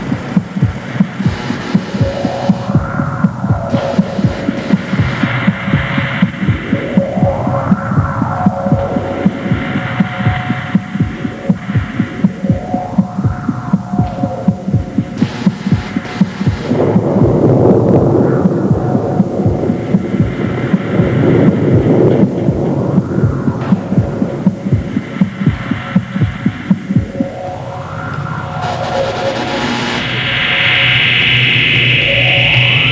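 Electronic throbbing pulse, like a heartbeat, repeating fast and evenly, with slow electronic tones that rise and fall again every few seconds: a mad-scientist laboratory sound effect. It grows louder and denser in the second half.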